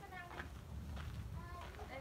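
Faint voices of people talking in the background, over a low steady hum.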